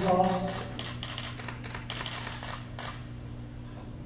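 A quick, irregular run of small clicks and taps lasting about three seconds, after a brief bit of a man's voice at the start.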